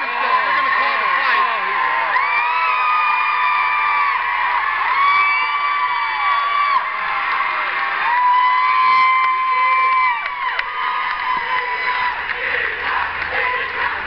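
Fight crowd cheering and shouting, with several long, high-pitched screams held for a second or two each.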